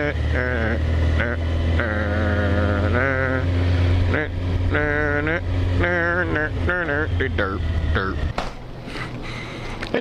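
Motorcycle engine running at low speed as the bike rolls slowly across a lot, a steady low rumble that drops away about eight seconds in. A wavering, voice-like pitched sound, like humming or singing, rides over it.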